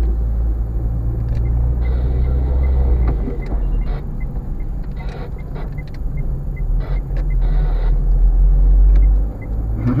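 Car cabin noise while driving: a steady low engine and tyre rumble, with the turn indicator ticking about two to three times a second as the car turns at a junction, and a few brief knocks from the road.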